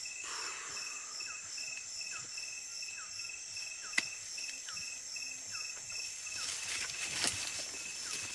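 A rainforest insect chorus: several steady high-pitched whines with a slight pulse, and a short upward chirp repeating about every second. There is a single sharp click about four seconds in, and brief rustles near the end.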